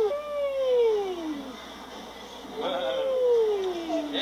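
A person's voice giving two long, drawn-out calls, each falling steadily in pitch, the first at the start and the second from a little before three seconds in, cheering on a toddler sliding down a playground slide.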